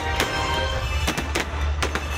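Aerial fireworks shells bursting, several sharp bangs in quick succession, over music with a heavy bass.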